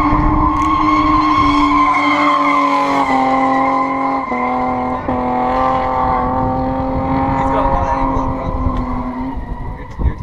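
Car engine running at a steady high pitch, its note dipping slightly about three and four seconds in and rising again about five seconds in, over a rumble of road noise.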